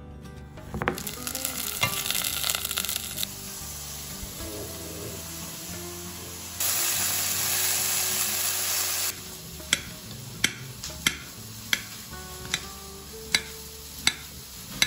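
Steaks sizzling in a hot frying pan, a loud steady hiss that starts and stops sharply about halfway through. A knife then slices a cucumber against a ceramic plate, sharp clicks about every two-thirds of a second, with background music underneath.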